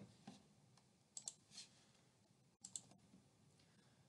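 A few faint computer mouse clicks over near silence: a pair about a second in and another pair near three seconds.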